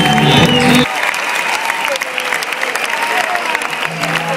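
A live rock band's song ends on a held chord that cuts off about a second in. The audience then applauds steadily, with scattered shouts.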